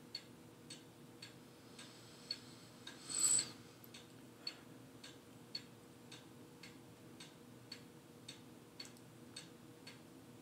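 Faint, steady clock ticking, about two ticks a second. A short rustling hiss comes about three seconds in.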